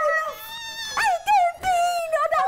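A woman's high-pitched voice in a drawn-out, wavering wail that swoops up and down in pitch.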